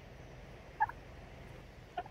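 A domestic turkey gives one short, double-noted call about a second in, over quiet outdoor background.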